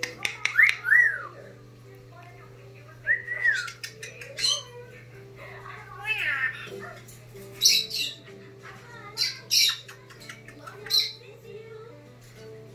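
Brown-headed parrot giving a string of short squawks, chirps and clicks with quick up-and-down whistled glides, about a dozen separate calls with gaps between. The loudest calls come in the first second.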